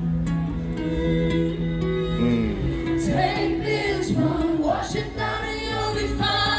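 Live acoustic performance of a song: acoustic guitar and a string quartet hold sustained chords, and singing comes in with bending, wavering notes about two to three seconds in.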